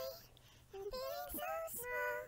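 A woman singing unaccompanied, sped up to a high chipmunk pitch: a held note trails off at the start, then after a short gap a brief sung phrase follows.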